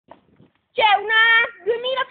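A young boy's voice singing out a long held note, then starting a second, shorter note near the end.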